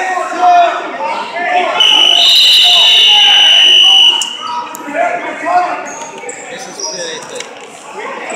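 Gym scoreboard buzzer sounding one steady high electronic tone for about two seconds, starting about two seconds in, over spectators' shouting voices; it marks the end of a period of the wrestling bout.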